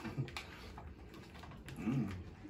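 A person sniffing into an opened potato-chip bag, with a few light crinkles of the bag's plastic early on and a short voiced 'mm' near the end.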